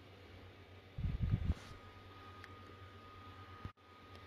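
Faint room tone on a voice-over recording, with a brief low sound about a second in.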